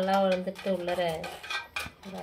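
Steel knife blade clicking and scraping against a steel plate while cutting slits into a whole fish, with a couple of sharp clicks near the end.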